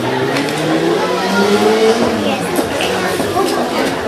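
Voices chattering, with an engine's hum rising steadily in pitch over the first two and a half seconds, as of a vehicle speeding up.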